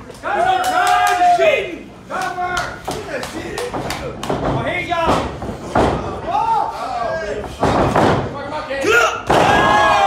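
Wrestlers' bodies thudding and slamming onto the ring canvas several times, with a heavy landing near the end, among loud shouts and yells.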